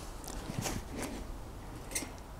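Faint handling sounds: a few soft rustles and light clicks, then a small knock near the end as a leather-gloved hand takes hold of the metal camp pot's handle and lid.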